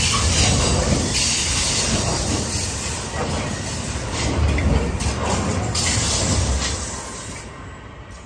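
Intermodal freight train's container and swap-body wagons rolling past: a steady rumble of wheels on rail with a high hiss and light clatter. It fades near the end as the last wagon goes by.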